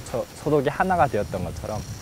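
A man speaking in Korean.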